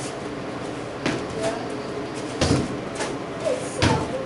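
Three short thuds about one and a half seconds apart, the last two the loudest, made while a broadsword form is practised on a matted studio floor.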